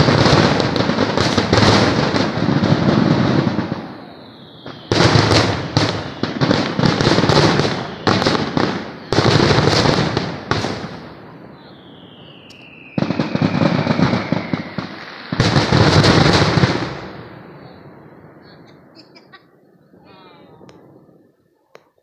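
Fireworks finale: aerial shells bursting in rapid, dense volleys of bangs and crackle, coming in several waves with short lulls between them. A long falling whistle sounds in one lull. Near the end the barrage thins out and fades.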